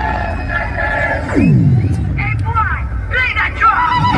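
Loud DJ music with a heavy bass beat and a crowd shouting over it. About a second and a half in, an effect sweeps steeply down in pitch.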